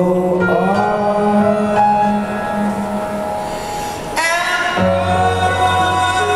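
Live piano ballad: slow, sustained piano chords under a male voice singing long held notes, with a swelling phrase about four seconds in.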